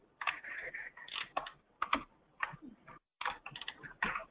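Irregular, fairly quiet clicking and tapping on a computer keyboard while someone works at a computer.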